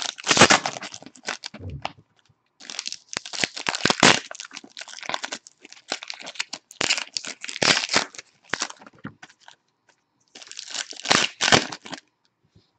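Foil wrappers of Panini Revolution basketball card packs crinkling and tearing as they are ripped open by hand. The crackling comes in bursts separated by short pauses.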